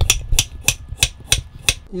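Chef's knife slicing a peeled potato into thick rounds on a wooden cutting board, the blade knocking the board in a steady rhythm of about three strokes a second.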